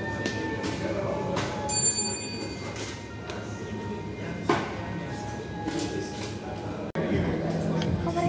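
Background music playing over indistinct voices, with a short bright clink about two seconds in.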